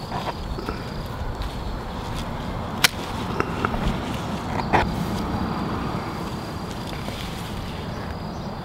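Pruning shears cutting through a fig branch to sever a rooted air layer from the parent tree: one sharp snap about three seconds in, then a few smaller clicks.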